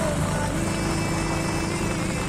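Motorcycle running while being ridden, with a steady engine hum under wind and road noise rushing over the microphone.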